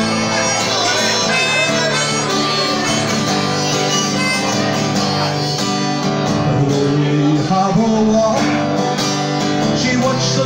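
Harmonica in a neck rack playing an instrumental break of sustained melody notes over a strummed acoustic guitar.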